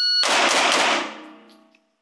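A shot timer beeps once, then a pistol fires three rapid shots about a quarter second apart (splits of 0.25 and 0.23), ringing off the range bay's block walls and dying away within about two seconds.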